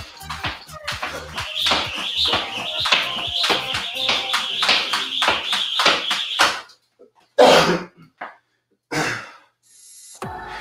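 Jump rope slapping the floor in a quick, even rhythm during double-unders, about three strokes a second, stopping about six and a half seconds in. Two loud, heavy breaths follow, with music under the skipping.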